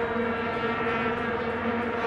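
Steady drone of many vuvuzelas blown by a football stadium crowd, heard on an archived match broadcast.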